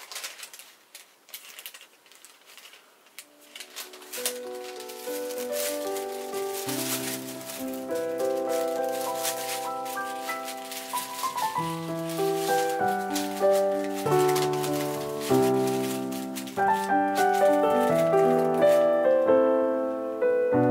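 Paper crinkling and rustling faintly for the first few seconds as tracing and transfer paper are handled, then background piano music fades in and plays a steady run of notes, growing louder through the rest.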